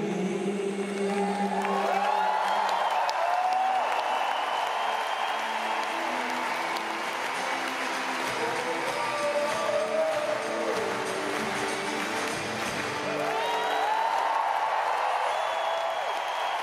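Acoustic guitar playing slow, sustained closing notes while a large arena crowd cheers and applauds. The guitar notes stop a few seconds before the end and the crowd noise swells.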